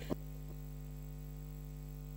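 Steady electrical mains hum in the audio feed, a low buzz with a short knock just after the start.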